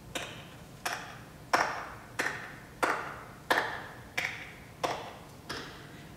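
One person clapping slowly and evenly, about ten claps at roughly a clap and a half per second, each with a short echo after it.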